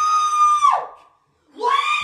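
A young woman screaming at a high pitch. One long scream slides down in pitch and stops just under a second in, and after a brief silence a second long scream starts.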